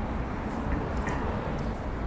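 Steady road traffic on a wide multi-lane city avenue, cars passing with a low rumble and tyre noise on wet, slushy road. Faint footsteps on snow about twice a second.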